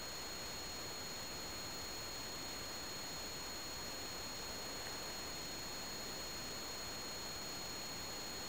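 Faint steady hiss with two thin, steady high-pitched tones running under it: recording background noise, with no distinct sound event.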